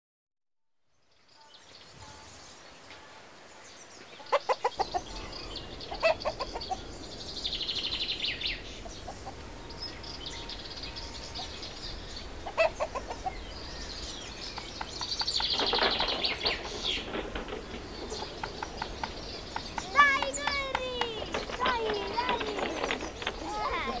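Farmyard ambience fading in from silence: hens clucking in short bursts and birds calling, with voices calling out near the end.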